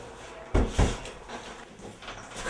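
Two heavy knocks about a quarter second apart, about half a second in, like a door or piece of furniture being bumped.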